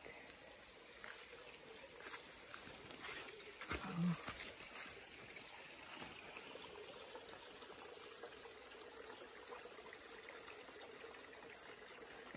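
Faint trickle of a small shallow creek, with scattered light rustling clicks and a steady high-pitched whine that stops about two-thirds of the way through. A short vocal murmur comes about four seconds in.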